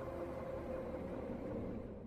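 Faint low rumbling noise that fades away near the end.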